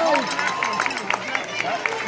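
Baseball spectators shouting and calling out in long, drawn-out voices, with short sharp claps or taps scattered through.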